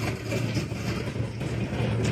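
A steady low engine hum, with a scratchy rustle from a rake dragged over loose material spread to dry on concrete.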